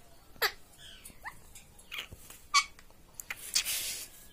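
Indian ringneck parakeet giving about four short, sharp calls, several sweeping down in pitch, the loudest about two and a half seconds in. A brief rustling burst follows near the end.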